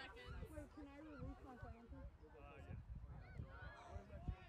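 Indistinct shouting and calling voices of players and spectators across an outdoor playing field, several short raised calls overlapping.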